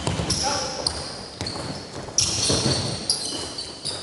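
Basketball players' sneakers squeaking on a hardwood gym floor in short, high-pitched chirps, with the ball bouncing, during a live drill possession.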